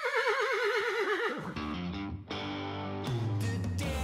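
A horse whinnying: one quavering call about a second and a half long that falls slightly in pitch, followed by guitar music.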